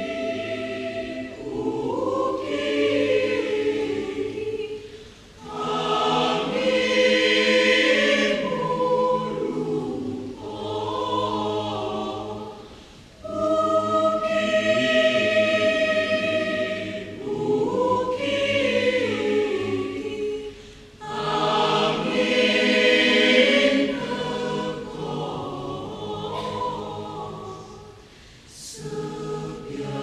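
Choir singing a Banyuwangi (East Javanese) folk song arrangement in several vocal parts. The singing comes in phrases of about eight seconds, with brief dips between them.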